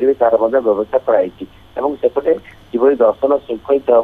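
Speech only: a reporter talking over a telephone line, the voice thin and narrow.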